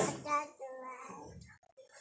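Faint voices: the tail of a woman's "Amen" into a microphone and a softer, higher voice answering, fading to quiet room tone about halfway through.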